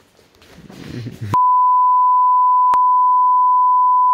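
A steady 1 kHz censor bleep, about three seconds long, that starts a little over a second in and blanks out a swear word.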